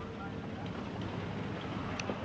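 Steady engine and water noise of a small fishing boat under way, towing on a line through open water.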